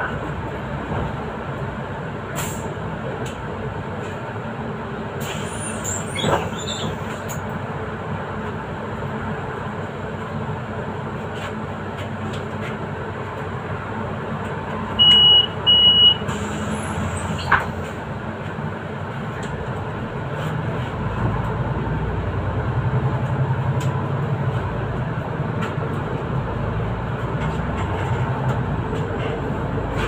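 Solaris Urbino 8.9 city bus heard from the driver's cab, its engine and running noise steady while it creeps in traffic, then the engine working harder as the bus gathers speed in the last third. Two short high electronic beeps sound about halfway through.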